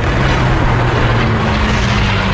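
Steady low rumble of massed tank engines, with a held droning hum; a second, higher hum joins about a second in.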